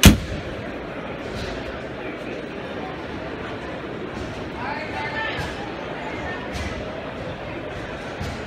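A single loud, sharp bang right at the start, with a short echo, followed by the steady din of a crowded indoor hall: distant voices and a few light knocks.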